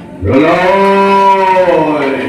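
A man's long, deep roaring cry, the lion-roar of Narasimha in the bhaona: it rises in pitch as it starts, is held for about a second and a half, and falls away near the end.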